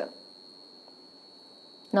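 Quiet room tone with a faint, steady high-pitched whine, between two stretches of a woman's speech. Her voice starts again near the end.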